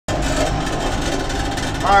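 Kubota tractor's diesel engine running steadily, heard from inside the cab while under way.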